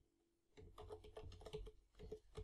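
Faint computer keyboard typing: a quick run of keystrokes starting about half a second in.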